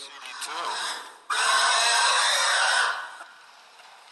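Pig squeal sounds: a short, weaker squeal falling in pitch, then a loud, harsh squeal lasting about a second and a half that stops about three seconds in.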